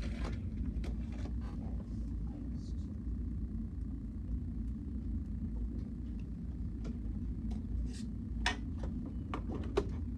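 Classroom room tone: a steady low hum with scattered light clicks and taps, two sharper ones near the end.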